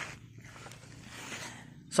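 A person's faint breathing: a soft, airy hiss of breath lasting about a second and a half, between spoken remarks.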